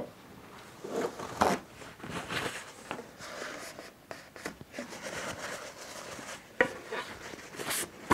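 Paper towel rubbing over a glued wooden joint, wiping away glue squeeze-out in short, irregular strokes, with a few light knocks.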